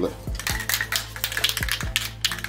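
Aerosol can of Rust-Oleum gloss white spray paint being shaken, its mixing ball rattling rapidly inside, over a background beat.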